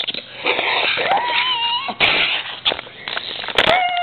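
Drawn-out meow-like cries: one rises and holds for about a second, another starts near the end and falls away, with breathy hissing bursts between.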